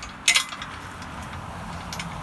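Steel chain clinking briefly as it is pulled up around a concrete fence post, one sharp metallic clatter about a third of a second in, over a low steady hum.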